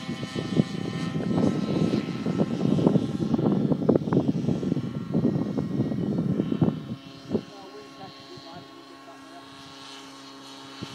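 Align T-Rex 700 radio-controlled helicopter flying overhead, a steady whine of several tones from its rotor and drivetrain. For the first seven seconds a loud, rough, crackling rumble covers it, then cuts off suddenly.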